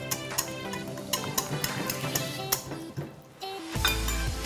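Background music over a wire whisk stirring a liquid chocolate mix in a glass bowl, with scattered clinks of the whisk against the glass.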